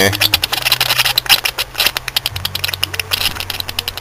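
Trapped air sputtering out of the loosened bleed screw on the thermostat housing of a BMW M30 straight-six, a dense, irregular crackle of many small pops. It is an air pocket in the cooling system escaping under the little pressure left; the air was drawn in through a cracked hose as the engine cooled.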